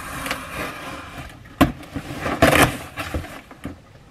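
Large cardboard shipping box being opened by hand: packing tape and cardboard scraping and tearing, with a sharp click about a second and a half in and a louder burst of tearing a moment later.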